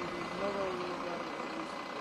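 Steady hum of road traffic and vehicle engines, with faint, indistinct voices.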